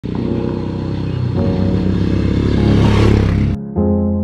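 Motorcycle engine revving, its pitch climbing twice, then cut off abruptly about three and a half seconds in. Electric piano music starts just after.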